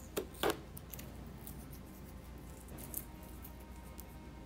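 Cardboard figure box being handled and opened, with its clear packing tape crackling. There are two sharp, loud crackles just after the start, then softer scattered rustles.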